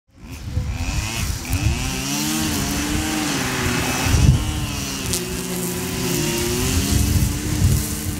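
Petrol string trimmers (brushcutters) running hard while cutting grass, the engine whine wavering up and down in pitch.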